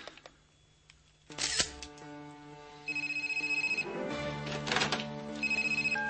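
Electronic telephone ringer trilling twice, a high, rapidly pulsing tone, first about three seconds in and again near the end, over background music. A brief loud noise comes about a second and a half in.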